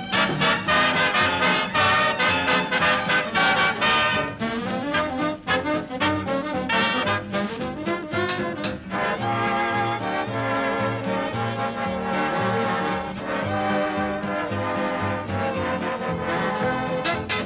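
A swing dance orchestra playing an instrumental number, with brass prominent.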